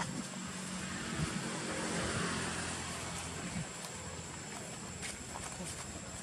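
A distant engine hum that swells to its loudest about two seconds in and then fades, with a thin steady high tone throughout.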